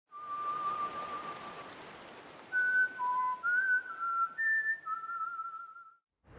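Title music: a slow whistled melody of long, slightly wavering single notes over a steady rain-like hiss with faint crackles. It stops abruptly just before the scene's dialogue begins.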